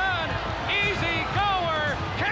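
A race caller's voice, raised and excited, calling a horse race down the stretch, with music underneath.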